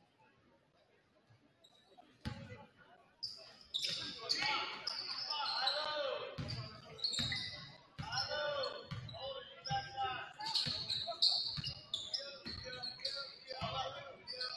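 A basketball being dribbled on a hardwood gym floor, its bounces coming about once a second, echoing in the large gym. The first two seconds are near silent. Voices call out over the dribbling.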